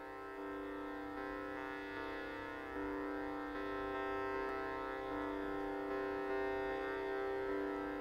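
Tanpura drone: a steady, sustained stack of tones with its strings sounding in turn, slowly growing louder.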